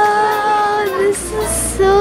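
Music with a high voice singing: one long held note, then two short notes near the end.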